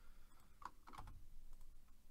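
Faint, scattered clicks of a computer keyboard and mouse during CAD work.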